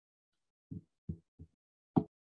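Three soft, low thuds in quick succession, then a louder thud near the end.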